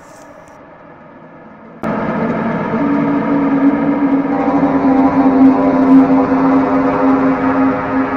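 Background music: a faint quiet stretch, then about two seconds in a loud, sustained drone of held tones comes in suddenly, a deep steady tone joining it a second later and ringing on.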